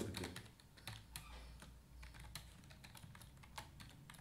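Computer keyboard typing: a run of faint, quick key clicks at an uneven pace.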